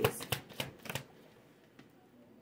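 A deck of oracle cards being shuffled and handled: a quick run of sharp card flicks and slaps over about the first second, with one faint tick near the end as a card is laid down.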